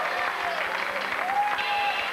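Audience applauding over stage music.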